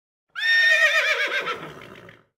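A horse whinnying: one call that opens high and steady, then breaks into a fast quavering trill that falls and fades away.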